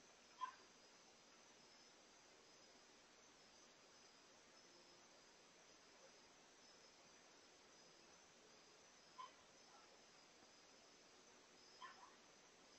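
Near silence with the faint, steady chirring of crickets. Three brief short blips break it: one just after the start, one about nine seconds in, and one near the end.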